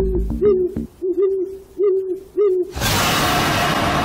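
Owl hooting as a film sound effect: a run of short, evenly spaced hoots. Near the end they are cut off by a sudden loud hit that carries on as a dense wash of noise.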